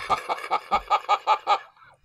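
A person laughing in a quick run of "ha-ha" pulses, about six a second, that breaks off about one and a half seconds in.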